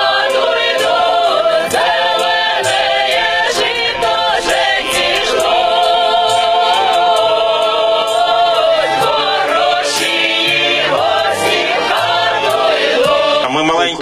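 A choir singing, with long held notes.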